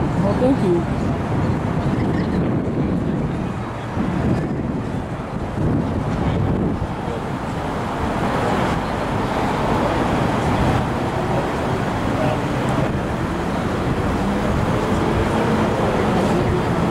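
Busy city street ambience: steady road traffic with the voices of people nearby.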